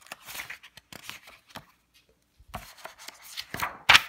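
Paper pages of a picture book being handled and turned: a series of short rustles, with the loudest page swish near the end.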